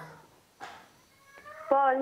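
Speech only: a short quiet pause, then near the end a woman begins a long, level-pitched "Po" (Albanian for "yes").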